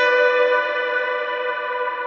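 Electric guitar chord struck once at the start and left to ring, slowly fading.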